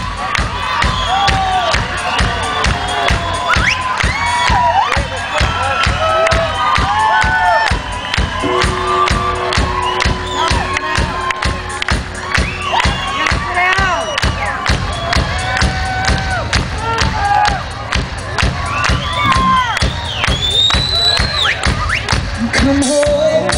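Live rock band keeping up a steady drum beat under a large crowd cheering and shouting, many voices rising and falling over the beat. A single held note sounds for a few seconds in the middle.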